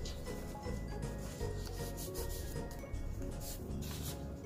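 Paper rustling and rubbing as the pages and paper tags of a handmade junk journal are handled and turned, over soft background music.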